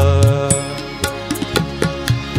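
Harmonium playing a melodic phrase between sung lines, accompanied by tabla strokes that come more often in the second half, in a Gujarati light-classical (sugam sangeet) song.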